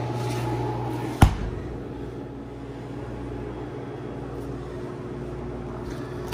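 A stainless-steel undercounter refrigerator door shutting with a single sharp knock about a second in, over a steady low hum.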